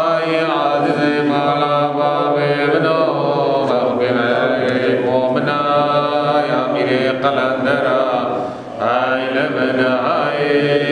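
A man's voice, or men's voices, chanting a Yazidi religious hymn in long, slowly moving held notes over a steady low tone. There is a short break for breath about eight and a half seconds in.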